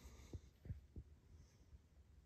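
Near silence: room tone with three faint low thumps in the first second.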